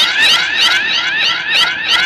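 Electronic warbling tone that repeats about four times a second, each repeat a quick upward glide with a tick.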